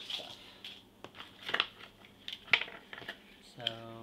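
Hands handling a stack of scrapbook paper pads and small ribbon spools on a wooden table: a few sharp taps and paper rustles, spaced irregularly.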